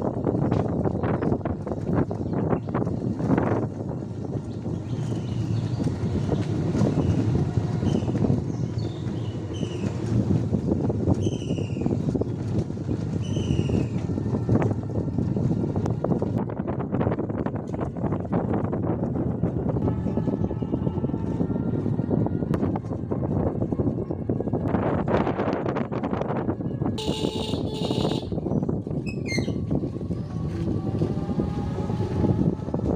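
Motorcycle engine running while riding, with wind rushing over the microphone. A few short rising chirps sound in the middle, and there is a brief hiss near the end.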